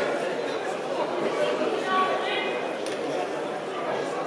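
Indistinct chatter of many voices echoing in a large hall.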